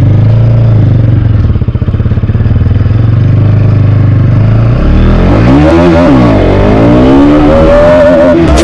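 Motorcycle engine running with a steady note, then about five seconds in its revs climb and drop several times as the bike accelerates.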